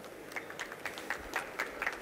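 Light, scattered applause from a small audience: a thin run of separate, uneven claps.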